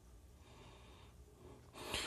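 Near silence: faint room tone with soft breathing, and an intake of breath near the end.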